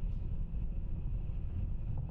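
Low, steady rumble of the Falcon 9 first stage's nine Merlin 1D engines firing in flight, shortly before main engine cutoff.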